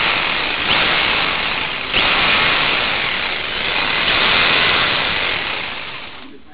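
Makita HR2450 780 W SDS-Plus rotary hammer running free with the bit in the air. It briefly surges in pitch about a second and two seconds in, then winds down near the end.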